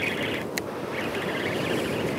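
Steady rushing noise of surf and wind on an open beach, with a faint raspy high buzz and a single sharp click about half a second in.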